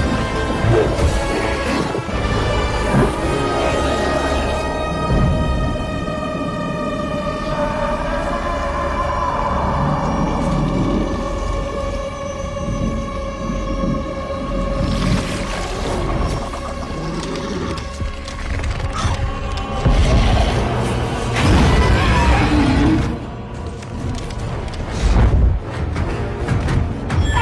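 Dark film score with long held tones, under the booms and crashing hits of a monster fight; the heaviest hits come in the last third.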